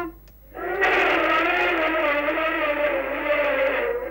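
Portable radio giving out a distorted, wavering drone mixed with hiss. It starts about half a second in and holds for about three seconds. This is radio interference: the set itself is said to be working.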